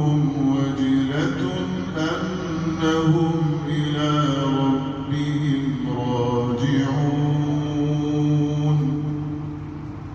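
Voices chanting a Sufi devotional hymn (inshad) unaccompanied, long melodic phrases over a held low note. The phrase dies away near the end.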